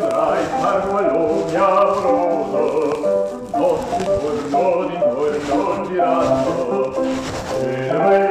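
A male classical voice singing over accompaniment, in held notes that step up and down.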